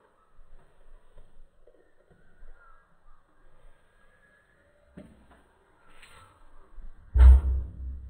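Faint shuffling from a pack of beagles, then a single loud, short, harsh bark from one of the beagles near the end.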